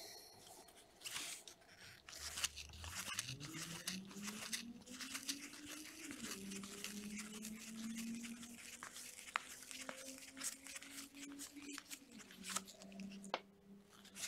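Baseball trading cards being flipped and slid across one another in a stack by gloved hands: a quiet run of crisp flicks, clicks and rustles of card stock.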